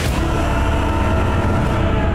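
Film soundtrack: a loud, steady deep rumble with a sustained drone of held tones over it, starting abruptly. It is sci-fi battle sound design of massed spacecraft under the score.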